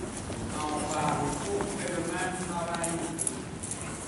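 Hoofbeats of a ridden horse on the sand footing of an indoor arena as it passes close by, with faint voices in the background.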